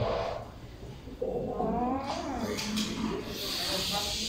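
A woman laughing, with drawn-out wordless cries that fall in pitch, and a hiss near the end.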